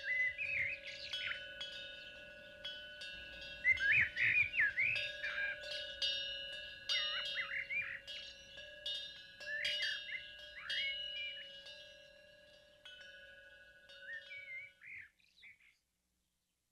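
Birds chirping over ringing chime strikes and a steady held tone, fading out near the end.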